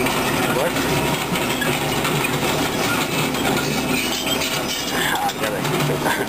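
Crawler excavator's diesel engine running steadily as it digs with its bucket, with intermittent clatter from the bucket working soil and stones.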